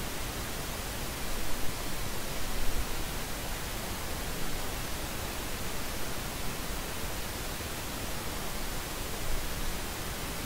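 Steady even hiss of background noise, with a few soft bumps in the first few seconds and near the end.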